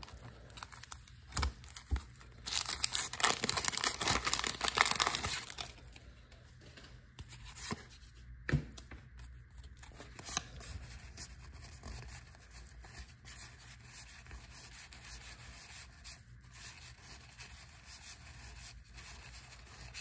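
A 1987 Donruss wax pack torn open by hand: the waxed paper wrapper crackles and tears loudly for about three seconds, a couple of seconds in. After that come soft rustles and light clicks as the cards are handled and thumbed through.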